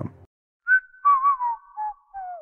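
Whistling: a few short notes under a held higher tone, ending in a falling glide.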